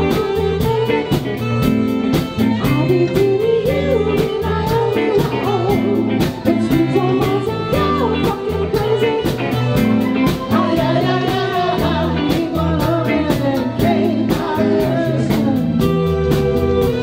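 Live band playing an upbeat pop-rock song: drums, electric bass, electric guitar, keyboards and saxophone, with a woman singing the lead.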